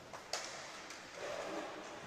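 Faint game sounds of inline hockey play: a few sharp clicks of sticks and puck on the hard rink floor, the clearest about a third of a second in, over the reverberant hum of an indoor sports hall.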